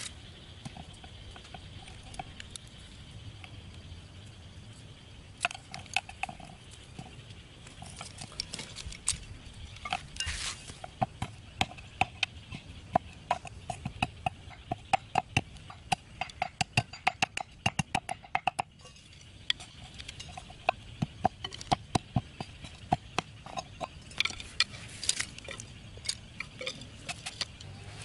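A large knife striking and cutting bamboo sticks against a wooden chopping board: a long run of sharp knocks, several a second at the busiest, with pauses between runs.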